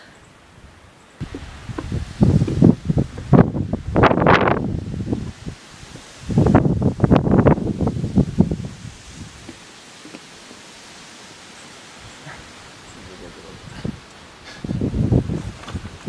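Wind gusting over a phone microphone, coming in three rough surges with a low steady hiss between them.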